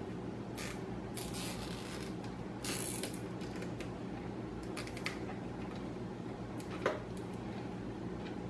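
A nylon cable tie ratcheting through its lock in a few short zips as it is pulled tight around a bundle of PC power cables, then a few light clicks, over a steady low hum.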